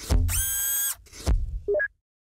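Logo-animation sound effects: a low thump with a bright tone that bends upward and then holds, a second thump about a second later, and two quick rising blips that cut off just before the end.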